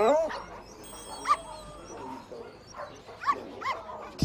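A puppy whimpering in short, high-pitched whines: one louder whine at the start, another about a second in, and a few more close together near the end.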